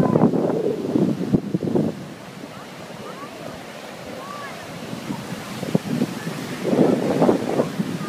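Ocean surf breaking and washing up the beach, with wind buffeting the microphone. It is loudest in the first two seconds and again near the end.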